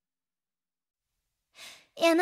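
Near silence in the gap between two songs. Near the end comes a short breath-like rush of noise, just before the next song starts.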